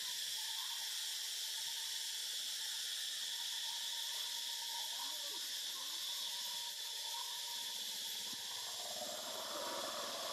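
Steady, high-pitched chorus of insects in the trees.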